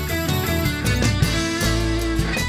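Blues-rock song played on layered electric guitars, with held notes ringing over bass and a steady drum beat.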